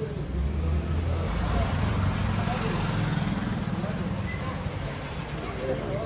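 A motor vehicle's engine running close by, a low rumble that is strongest in the first half and eases off toward the end, with faint voices over it.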